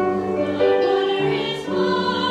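A high school mixed choir of girls and boys singing in harmony, holding long notes that change pitch; a new phrase enters right at the start after a brief breath.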